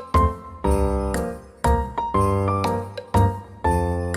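Light, cute background music: bell-like chiming melody over a steady bass beat.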